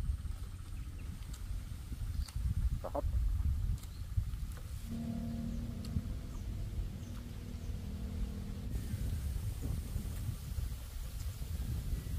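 Wind buffeting the microphone outdoors, a steady low rumble throughout. A faint steady drone joins it from about five to nine seconds in.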